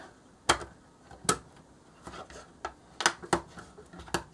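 Polydron Frameworks plastic pieces clicking as a net is folded up into a cube: about five sharp, separate snaps at irregular intervals.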